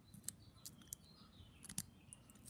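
Faint scraping and clicking of a hobby-knife tip working in the slot of a Victor Exhibition phonograph reproducer's needle bar, cleaning out a century of crud: a few small scattered clicks, the clearest near the end.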